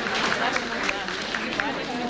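Indistinct murmur of many overlapping voices from a seated audience, with scattered short taps.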